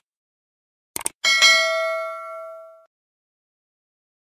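Subscribe-button sound effect: a quick double mouse click about a second in, followed at once by a bright notification bell ding that rings out and fades over about a second and a half.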